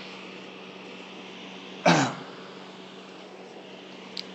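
A man clears his throat once, a short, loud burst about halfway through, over a steady low hum and faint hiss.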